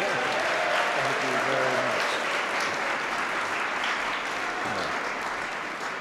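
Audience applauding, with some laughter and voices mixed in near the start, the clapping easing off slightly toward the end.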